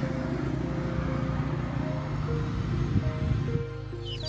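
Steady low rumble of road traffic, with a simple background melody of short held notes coming in about halfway through. The traffic rumble drops away near the end.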